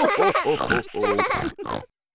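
The Peppa Pig cartoon family laughing together, a quick run of repeated laughs mixed with pig snorts.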